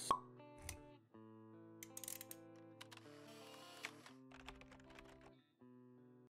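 Quiet logo-animation jingle: a sharp pop right at the start, then soft held synth notes with scattered light clicks.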